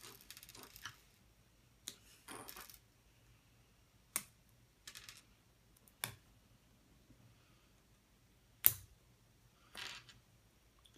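Small Lego bricks being pulled apart and handled on a wooden tabletop: scattered sharp plastic clicks and taps, a cluster at the start and single ones every second or two, the loudest near the end.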